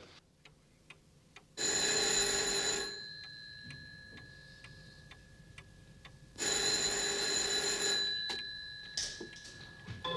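A telephone bell ringing twice, each ring lasting over a second, the first about a second and a half in and the second just past the middle, with a faint ringing tone hanging on between them. Under it a pendulum clock ticks steadily, about two to three ticks a second.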